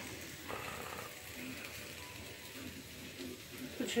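Faint, steady hiss of a thin pancake frying in a frying pan on a gas stove.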